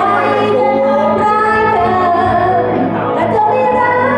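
A young female voice singing karaoke into a microphone over a backing track, holding long, sliding notes.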